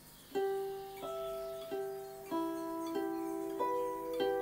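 Hollow-body archtop guitar picked one note at a time in a slow riff, six notes about two-thirds of a second apart, each left ringing over the next. The notes are the 12th fret on the G string alternating with the 12th fret on the high E, the open E and the 12th fret on the B.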